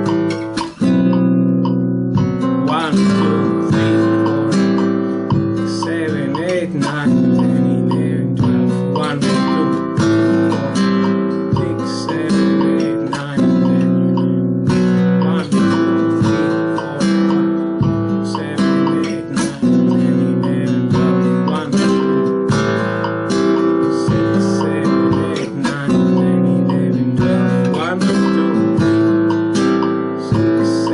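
Flamenco guitar played with rasgueo strums, chords struck by the right hand in a steady soleá por bulería compás.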